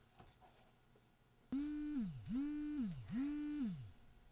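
A mobile phone vibrating for an incoming call: three buzzes about a second apart, each starting abruptly, holding a steady hum, then sliding down in pitch as the vibration motor spins down.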